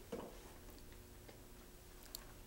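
Near silence: room tone with a faint steady hum, a soft short sound just after the start and a few faint ticks.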